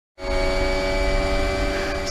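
Red Bull Formula 1 car's Honda 1.6-litre turbo V6 heard from the onboard camera, running at a steady, unchanging engine note. It starts abruptly just after the opening.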